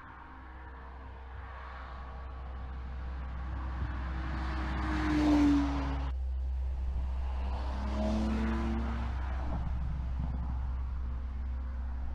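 BMW X4 M's twin-turbo straight-six as the SUV drives past. The engine note builds and peaks about five seconds in with a falling pitch as it passes, breaks off abruptly just after, then a second pass-by peaks around eight seconds.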